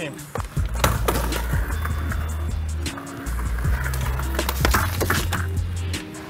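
Skateboard on a ramp: wheels rolling and the board knocking and clattering against the ramp, with sharp knocks about a second in and again near the end. Background music with a steady bass line plays underneath.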